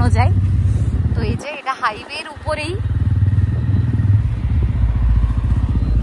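Motorcycle riding along, a steady low engine rumble mixed with wind on the microphone. It cuts out briefly twice about a second and a half in, then comes back.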